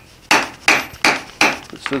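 Hand hammer striking a red-hot iron bar on a steel anvil, drawing out a taper: four sharp blows, about three a second.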